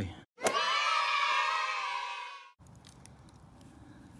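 A short sound effect cut into the audio: about two seconds of high-pitched cheering voices. It starts suddenly after a brief dead silence and stops abruptly.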